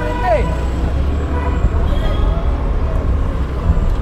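Street traffic noise heard from a moving scooter: a steady low rumble of engine and wind on the microphone, with passing voices. A voice briefly calls out with a falling pitch near the start.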